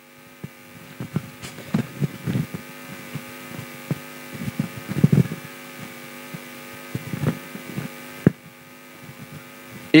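Steady electrical hum of several tones on a live microphone and PA line, with soft low thumps scattered through it, typical of a handheld microphone being carried. The hum cuts off with a click about eight seconds in.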